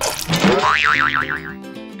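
A cartoon sound effect: a sudden swish, then a wobbling boing that wavers up and down in pitch for about a second, over light background music.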